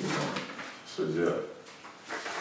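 A person's brief vocal sound about a second in, over quiet room tone.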